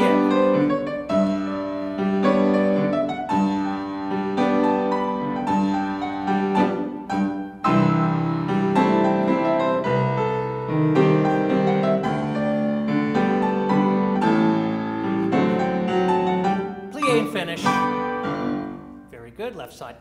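Grand piano played live as ballet class accompaniment, a steady metred phrase of chords and melody. About eight seconds in a new phrase begins with deeper bass notes, and the playing dies away just before the end.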